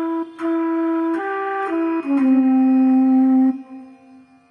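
Slow flute melody: a few short notes, then a long lower note held for about a second and a half that fades away near the end.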